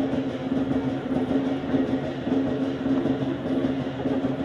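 Lion dance percussion ensemble playing continuously: big drum, gong and cymbals. A steady ringing tone sits under a dense run of rapid cymbal clashes and drum beats.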